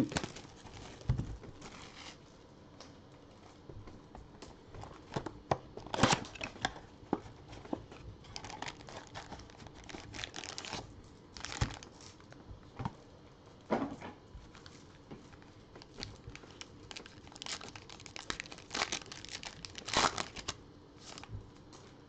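Plastic shrink-wrap torn off a trading-card blaster box and foil card packs crinkling and ripping open by hand: a long string of irregular crinkles and tears, with a few louder rips among them.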